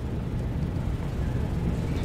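Steady low rumble and faint hiss of room tone, with no distinct event.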